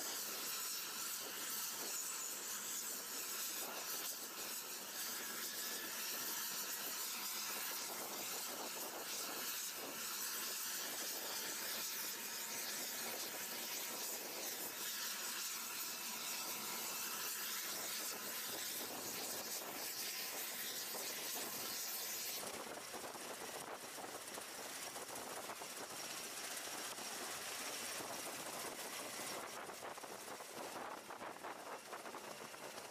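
Steady hissing rush of a CMV-22B Osprey tiltrotor's turboshaft engines running with the proprotors turning, with faint steady whine tones in it. The sound changes in tone about 22 seconds in.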